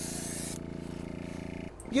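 Airbrush spraying paint with a steady hiss that stops about half a second in as the trigger is let go, leaving the small airbrush compressor humming steadily; the hum breaks off shortly before the end.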